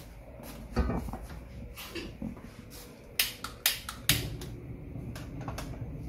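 A few separate sharp clicks and knocks as a saucepan of water is handled and set down on the grate of a gas hob, with the burner being lit.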